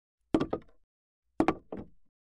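Knocking on a door in two quick groups: about three knocks shortly after the start, then about four more around a second and a half in.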